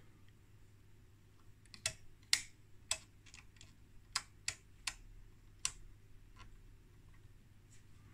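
Front-panel toggle switches and rotary switch detents of a 1980 Trio CS-1352 oscilloscope being flipped and turned by hand: a run of about a dozen sharp, light mechanical clicks, most between two and six seconds in.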